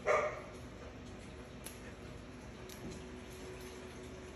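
A dog barks once, a single short, loud bark right at the start.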